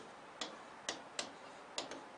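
A pen tip tapping and clicking against an interactive whiteboard screen while writing: about five short, sharp ticks at uneven intervals.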